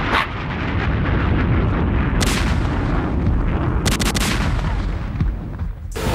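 Booming, explosion-like sound effects with a continuous low rumble, broken by sharp gunshot-like cracks about two seconds in and again around four seconds in.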